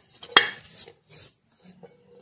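Stainless steel bowl handled on a stone counter: one sharp metallic clink with a brief ring about a third of a second in, and faint rubbing of fingers inside the bowl as it is greased.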